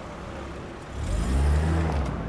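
Car engine revving up as the car accelerates away, swelling loud about halfway through and easing off near the end.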